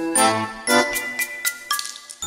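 Background music: a bright tune of quick pitched notes with tinkling, bell-like strikes over a bass line, dipping briefly near the end.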